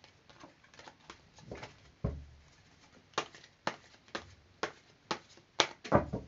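A deck of tarot cards being shuffled by hand: faint card ticks, then from about halfway a run of sharp card slaps about two a second. There is a soft thump about two seconds in.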